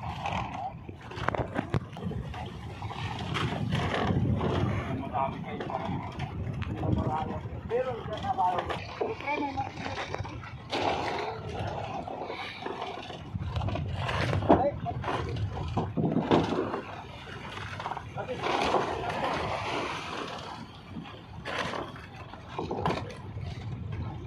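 Indistinct voices of people talking, with scattered knocks and a low rumble underneath.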